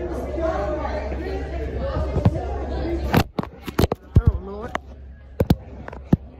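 Chatter of several voices in a large indoor room, followed in the second half by a run of sharp clicks and knocks.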